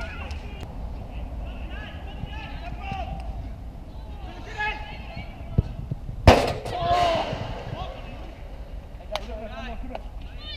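Outdoor football match: scattered distant shouts from players, and one sharp thump of the football being struck about six seconds in, the loudest sound, followed at once by a shout.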